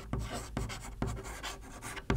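Chalk writing on a chalkboard: a quick, irregular run of light scratches and taps as a word is written.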